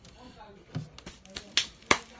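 Sharp clicks and taps, about five of them in the second half, from hands working damp soil substrate against the glass of a vivarium.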